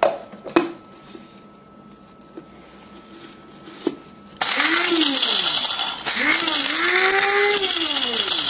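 Electric blade coffee grinder used for spices, run in pulses to grind whole fennel seed, anise seed, black peppercorns and chili flakes. The motor starts suddenly about four seconds in, with a short break about two seconds later. Light clicks from the spices going in and the lid being fitted come first.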